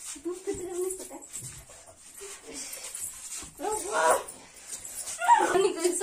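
Girls' high-pitched whining, straining cries in short bursts while they wrestle, the loudest about four and five seconds in, with a few faint scuffling knocks.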